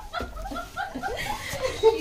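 Laughter in short chuckling bursts, with a little speech mixed in.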